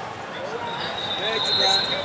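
Busy wrestling-arena background of distant shouting voices, with a long, steady, high referee's whistle blast from a nearby mat starting a little under a second in and holding to the end.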